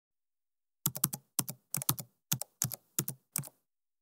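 Computer keyboard typing sound effect: about seventeen crisp keystrokes in quick little groups, starting about a second in and stopping shortly before the end, as text is typed into a search bar.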